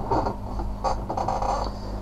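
A steady low electrical hum with faint room noise and some weak scratchy sounds; no distinct clicks or knocks stand out.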